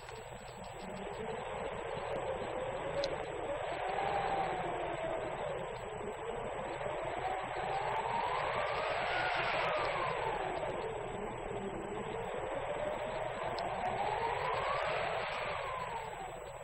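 Hurricane-force wind blowing in gusts: a rushing noise that swells and eases, with a whistling tone that rises and falls slowly in pitch three times.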